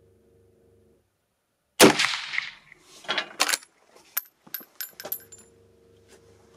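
A single shot from a Pedersoli Droptine lever-action rifle in .30-30 Winchester, about two seconds in. About a second later come two sharp clacks as the lever is worked. Then a spent brass case pings and bounces several times on the concrete floor.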